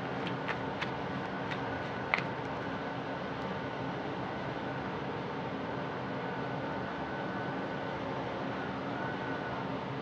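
Steady mechanical hum and hiss, like a fan or heater running, with a few faint clicks in the first two seconds.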